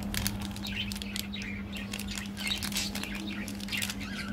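Crinkly plastic candy-bar wrapper crackling and tearing as it is peeled open, in quick irregular crackles. Birds chirp in the background over a steady low hum.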